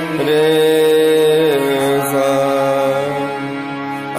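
Harmonium and voice holding long notes of raga Bhimpalasi, stepping from one sustained note to the next, with a change of pitch about a second and a half in.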